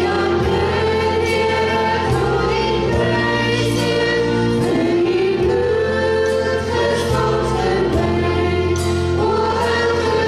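Afrikaans worship song sung by a group of voices over instrumental backing, with steady bass notes that change every second or two.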